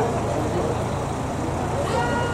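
Steady running noise of a vehicle close by, over street traffic noise.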